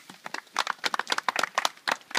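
Wood fire crackling: a quick, irregular run of sharp pops and snaps from the burning sticks, coming thick and fast from about half a second in.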